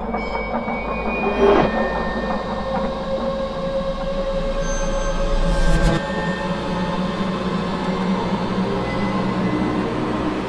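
Layered horror-film sound design: a steady rumbling, metallic drone with held, screeching high tones. A hit with a falling glide comes about a second and a half in, and another sharp hit near six seconds, after which the deepest rumble drops away.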